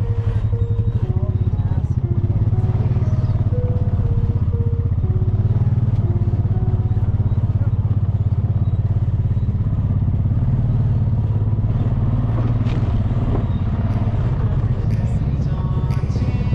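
4WD quad bike engine running steadily at low speed, a continuous low pulsing note.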